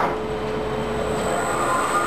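LG-OTIS traction elevator machine with a three-phase induction motor: a steady hum, then about one and a half seconds in a higher whine sets in as the motor starts the car moving down.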